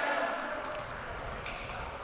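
Gymnasium background of crowd chatter with a few faint bounces of a basketball on a hardwood floor, as a player dribbles at the free-throw line.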